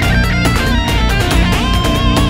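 Electric 8-string guitar playing a lead line with bends and vibrato over a dense metal backing track of drums and low guitars, in a long odd-time cycle of 57/4.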